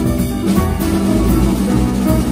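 Jazz quartet playing live: grand piano, guitar, upright double bass and drum kit together at a steady loud level.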